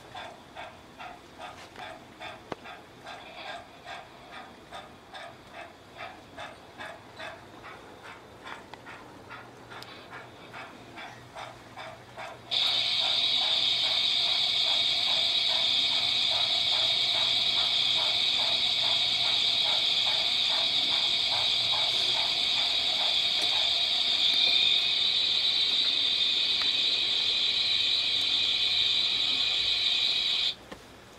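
Sound decoder of a DCC sound-fitted O gauge model steam locomotive chuffing at about two beats a second. About twelve seconds in, a much louder steady hiss of escaping steam cuts in suddenly and carries on, with the chuffing fading under it after several seconds.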